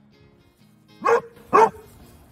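A basset hound barks twice, two short loud barks about half a second apart, over soft background music.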